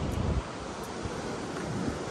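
Wind buffeting the microphone over the steady wash of sea surf breaking below the cliff; the low wind rumble eases off about half a second in.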